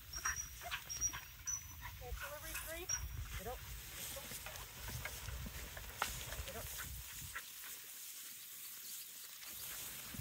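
A dog whining in a few short, wavering calls about two to three seconds in, over rustling and low wind rumble in tall grass.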